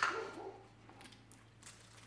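Faint scrapes and light ticks of a table knife scooping and spreading hummus from a small plastic tub, over a low steady hum.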